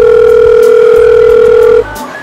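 A loud, steady telephone tone on one pitch, held for almost two seconds and cutting off suddenly near the end, over background music.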